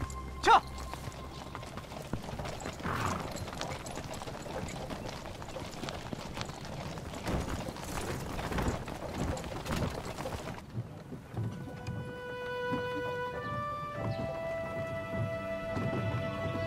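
Horses' hooves clip-clopping and a horse-drawn wooden wagon rolling over a gravel track, with one brief, loud sound falling in pitch about half a second in. From about ten seconds in, music of held notes takes over.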